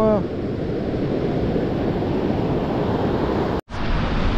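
Steady rush of wind on the microphone mixed with surf breaking on the beach. The sound cuts out for a moment near the end.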